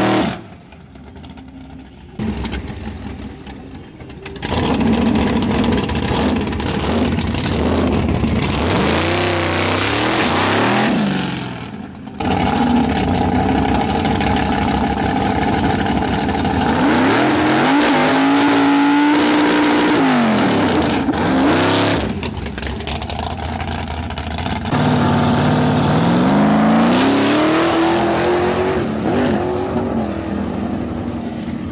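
A drag-racing altered's engine revving hard, its pitch rising and falling several times, as it does a burnout, sits at the start line and pulls away down the strip. The sound breaks off abruptly and restarts a few times.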